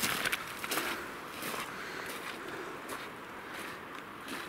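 Walking boots crunching through slushy snow and icy mud, footsteps at a steady walking pace.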